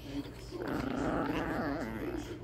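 A small dog giving one rough, sustained growl of about a second and a half, starting about half a second in: a play growl while wrestling and biting at another small dog.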